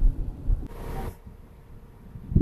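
Low road rumble inside a moving car, with a short hiss about a second in; after that the sound drops to a quieter low background.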